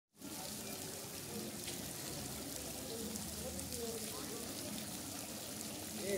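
Garden fountains splashing steadily, with faint voices of people in the background.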